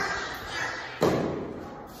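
A single sharp thump about a second in, dying away over the following second.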